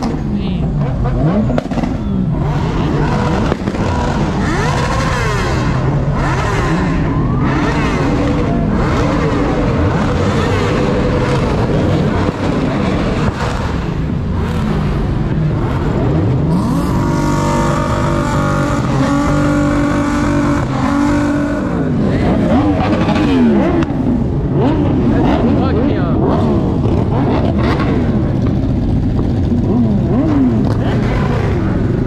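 Several car engines revving and accelerating past at close range, pitch sweeping up and down again and again, with a steady held note for a few seconds about halfway through. Motorcycles join near the end, and crowd voices run underneath.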